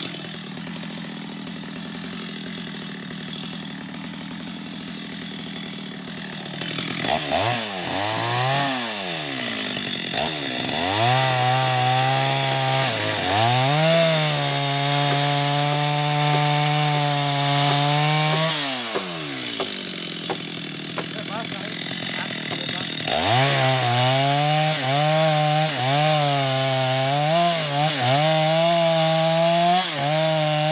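Two-stroke chainsaw idling for several seconds, then revved up and down and run at full throttle into the base of a mahogany trunk. It drops back to idle for a few seconds in the middle, then runs flat out again, its pitch wavering as it bogs under the load of the cut.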